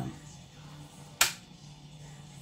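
A single sharp plastic click about a second in, from a CD case being handled, over faint black metal music playing in the background.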